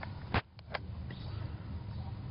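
Handling noise on a camera: one sharp click about a third of a second in, then two fainter clicks, over a steady low hum.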